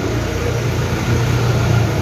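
Steady low hum of an engine running at idle.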